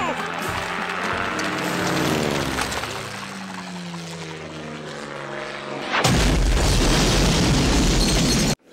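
A pitched whistling sound glides slowly downward, over cartoon music. About six seconds in, it gives way suddenly to a loud explosion and roar from news footage of an airliner crashing into a skyscraper.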